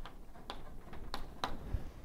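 Chalk writing on a blackboard: a handful of irregular sharp taps and clicks as the chalk strikes and scrapes the board.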